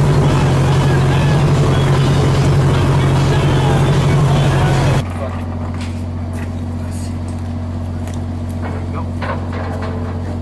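Ship's engine running with a steady low hum under a wash of noise. About halfway through the sound drops abruptly to a quieter, steady machinery hum with a few faint clicks and knocks.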